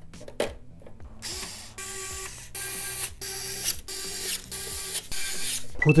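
Screwdriver driving the screws that hold a motherboard to the case's standoffs: a mechanical ratcheting sound in several short runs with brief gaps between them, starting about a second in.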